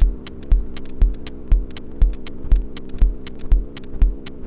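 Glitch electronic music: a deep thumping pulse about twice a second under a steady humming drone, with sharp high clicks scattered irregularly between the beats.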